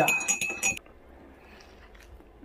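A teaspoon clinking against the inside of a ceramic mug in quick repeated strokes, with a light ring, while a drink is stirred. It stops just under a second in.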